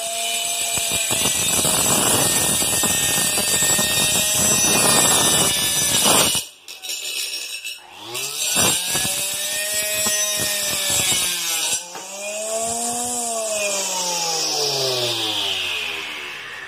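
A homemade saw made from a hair-dryer motor with a small cutting disc cuts through a PVC pipe. Its whine is joined by a dense grinding rasp for about five seconds, which stops abruptly. The motor is then run up twice more, its whine rising in pitch and falling away as it winds down.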